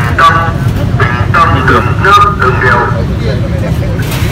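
Men's voices talking over a steady low rumble.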